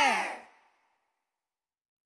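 The closing sung note of a children's cartoon theme song slides down in pitch and fades out within about half a second, followed by dead silence.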